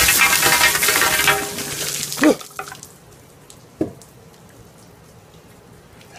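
Bucket of ice water dumped over a seated man's head, splashing loudly onto him and the tabletop for about two seconds. It ends with a short cry from him, and another small sound follows about a second and a half later.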